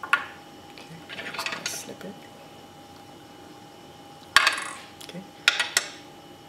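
Small metal fly-tying tools handled at the vise, making sharp clicks and clinks. One click comes right at the start, a scratchy rustle follows about a second in, a louder click comes just past four seconds, and a quick run of clicks comes near the end.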